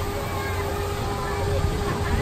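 Monorail train running along its elevated rail, heard from on board: a steady low rumble with a constant steady hum, under faint distant voices.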